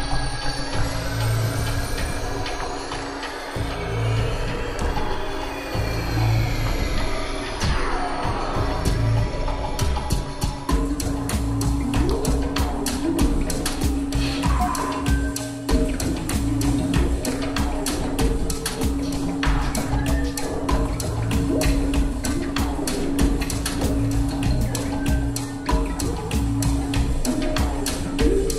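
Live experimental electronic music: a steady held drone over low pulsing bass, with high sweeping tones that rise and fall during the first part. About ten seconds in, a fast, dense clicking rhythm takes over.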